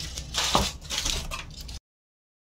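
Aluminium foil crinkling and rustling as a foil-lined tray is handled, stopping abruptly near the end.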